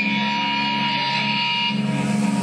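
Live thrash metal band on amplified electric guitar holding a sustained, ringing chord with a steady high tone. The sound thickens into the full band shortly before the end.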